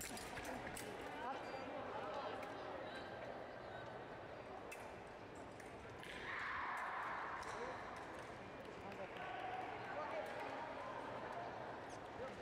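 Foil fencing action: sharp clicks and thumps of feet stamping on the piste and blades meeting in the first second or two, over a hall full of background voices. A broad rush of noise rises about halfway through and fades after two seconds.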